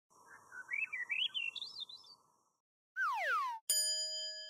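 Short sound-effect jingle: a warbling chirp that climbs steadily in pitch over about two seconds, then a quick falling pitch glide about three seconds in, followed at once by a single bell-like ding that rings on.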